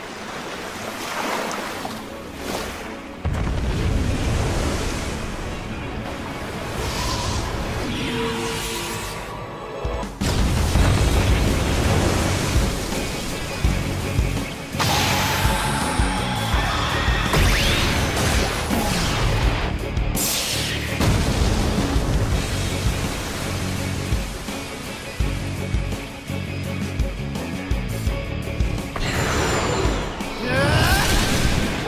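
Dramatic action-scene music layered with crashing and booming impact effects; a heavy low rumble comes in about three seconds in and a loud crash hits at about ten seconds.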